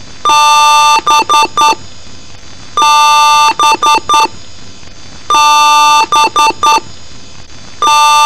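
Computer POST beep code from a PC speaker: one long beep followed by three quick short beeps, the pattern repeating about every two and a half seconds over a steady hiss.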